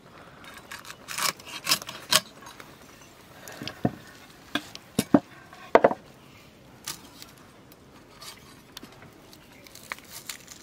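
Koi fish (climbing perch) being cleaned on a boti blade: short, irregular scrapes and clicks as the fish's hard scales and body are drawn against the metal. The strokes are loudest and most frequent about one to two seconds in and again around five to six seconds in.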